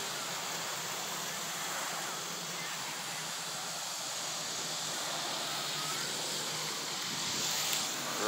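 Steady outdoor background noise: an even hiss with a faint low hum and no distinct events.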